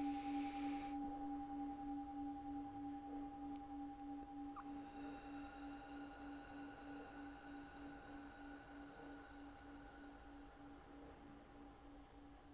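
A singing bowl ringing out after a strike. Its low hum pulses in a slow wobble, a few beats a second, and fades away gradually. Fainter, higher ringing tones join about five seconds in.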